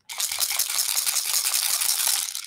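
Turtle shell rattle shaken rapidly in a steady, continuous rattle.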